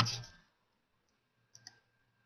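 Two quick computer-mouse clicks about a second and a half in, against otherwise near silence.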